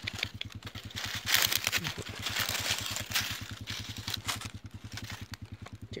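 A small engine idling steadily with a fast, even low throb. Over it comes the crackle and rustle of dry leaves being pushed aside by hand, loudest about a second and a half in.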